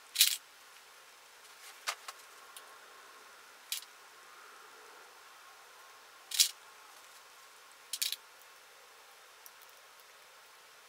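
Sewing clips snapping shut onto layers of knit fabric as a bodice is clipped to a skirt at the waist seam: five short sharp clicks at irregular intervals of about two seconds.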